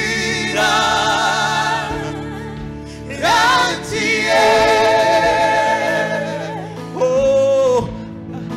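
Live gospel song: lead and backing singers hold long notes with vibrato over a band accompaniment, with a rising vocal swoop about three seconds in.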